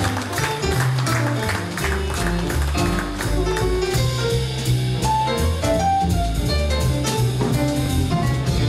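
Live jazz piano trio of upright double bass, piano and drum kit playing the bebop tune without vocals. Distinct plucked bass notes move steadily underneath, with piano lines and regular cymbal strokes above.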